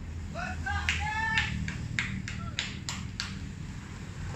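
A short high-pitched shout from a cricket player, then about seven sharp hand claps, evenly spaced at roughly three a second.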